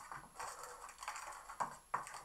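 Small figure's packaging crinkling and rustling in the hands as it is unwrapped, in a run of short crackles.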